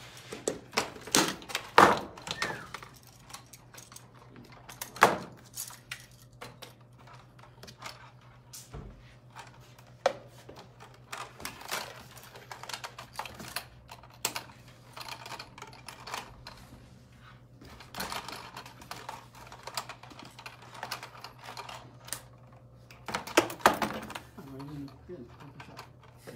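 Irregular clicks, taps and knocks of hand tools and metal parts as an electrician works on a metal electrical box on a table, with a burst of louder knocks near the end.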